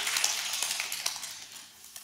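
Audience applause fading away over about two seconds, from a steady patter to almost nothing near the end.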